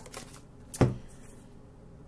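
A deck of tarot cards being handled as a card is drawn: a few light card clicks, then one sharp slap a little under a second in.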